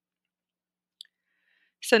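Near silence, broken by a single faint short click about a second in; just before the end a voice starts speaking a rapid string of non-word syllables.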